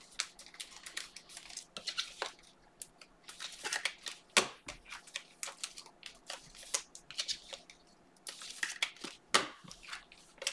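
Foil wrapper of a 2021 Panini Mosaic football hobby pack crinkling and tearing as it is opened by hand, with the cards inside being handled. Irregular crackling, with sharper crackles about four and a half and nine and a half seconds in.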